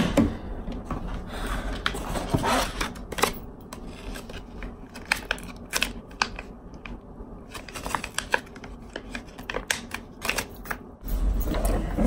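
Irregular small clicks, taps and rustles of a toothbrush travel case and its packaging being handled.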